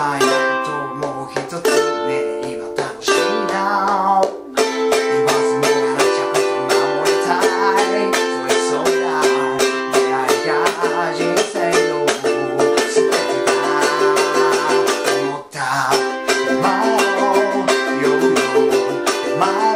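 A man singing in Japanese while strumming a ukulele in a fast, even beat. The strumming and voice drop out briefly twice, about four seconds in and about fifteen seconds in.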